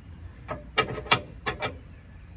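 Steel L-shaped retaining pin clinking against the weight distribution hitch's steel trunnion bar bracket as it is worked into place by hand. There are about six light metallic clicks within a second or so.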